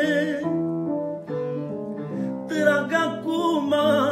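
Live manele song: a man's sung line trails off, a keyboard plays a short run of held notes on its own, and his singing comes back in about two and a half seconds in.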